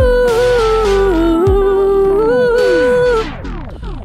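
Music: the close of a slow R&B song, with a held, wordless vocal line sliding gently in pitch over the backing. The vocal stops about three seconds in, leaving falling, gliding tones as the track drops away.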